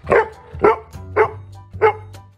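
A dog barking four times, about half a second apart, over background music.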